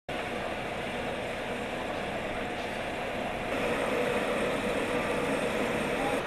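Engines of heavy road-paving machinery, an asphalt paver and a dump truck, running steadily. The noise grows a little louder about halfway through.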